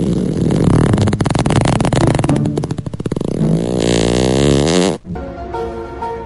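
A long, loud fart sound with a rapid rattling flutter and a wavering pitch, cutting off abruptly about five seconds in. A light melody of steady, flute-like notes follows.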